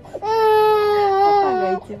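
A toddler of about a year and a half crying: one long, high wail held about a second and a half, dropping in pitch at the end. The crying is distress after a difficult blood draw.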